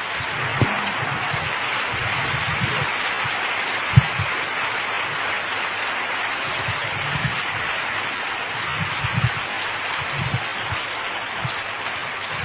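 Audience applauding steadily, with a few low thumps and one sharp knock about four seconds in.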